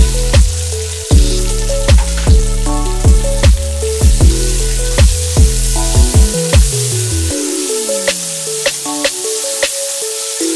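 Background music with a steady beat and bass, over diced raw mango sizzling in hot oil in a kadai as it is tipped in and stirred. The bass drops out about seven seconds in with a falling glide, leaving the beat and the sizzle.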